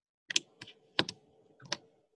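A handful of short, irregularly spaced clicks, like keys typed on a computer keyboard, over a faint steady hum.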